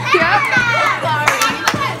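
Loud music playing with teenagers' excited voices shouting over it while they dance.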